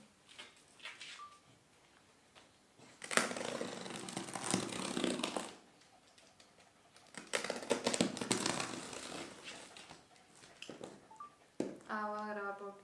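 Hands working over a taped cardboard shipping box, making scratchy, crackly noise in two spells of two to three seconds each, about three seconds in and again about seven seconds in.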